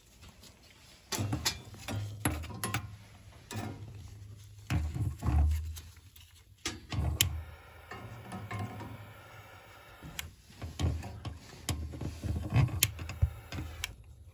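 Irregular sharp clicks and knocks over a low handling rumble while a boiler's standing pilot is being lit with the gas valve's pilot plunger held down; the pilot catches near the end.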